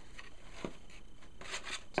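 Ribbon and a paper gift box being handled as a knot is tied, a soft rustling and rubbing with a few light clicks, more of them near the end.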